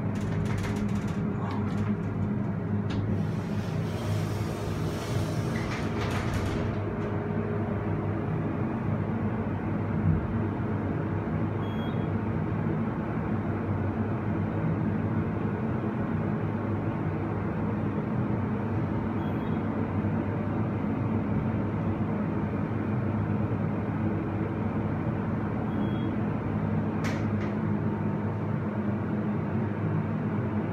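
Hydraulic elevator car descending: a steady low hum and rumble of the ride heard inside the car. A brief rushing noise comes a few seconds in, and a single click near the end.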